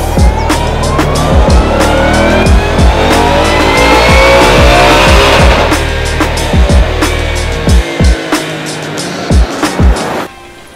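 2021 Shelby GT500's supercharged 5.2-litre V8 making a full-throttle baseline pull on a chassis dyno: its pitch climbs steadily for about five and a half seconds, then drops away as the throttle closes. Music with a steady drum beat plays over it.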